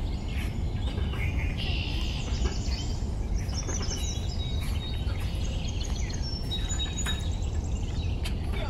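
Birds chirping and calling in the garden trees, short high notes repeated in quick runs, over a steady low rumble.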